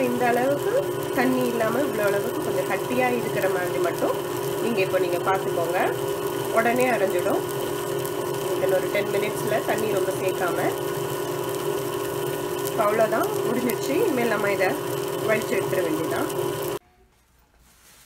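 Tabletop wet grinder running steadily, its stone roller turning in a steel drum and grinding soaked parboiled rice into murukku batter. The hum cuts off suddenly about a second before the end.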